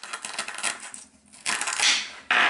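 Velcro tearing as a plastic toy knife cuts a wooden toy cucumber apart: a scratchy stretch in the first second, then a louder rip near the end as a piece pulls away.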